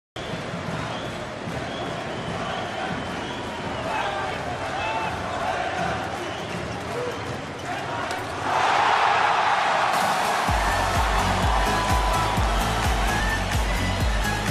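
Handball match arena sound: a voice talking over the crowd, with the knocks of the ball bouncing on the court. The crowd noise swells about eight seconds in, and music with a heavy, steady beat comes in a couple of seconds later.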